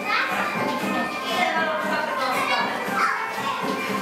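A group of children's voices chattering and calling out, with two rising and falling calls near the start and about three seconds in. Dance music plays more quietly underneath.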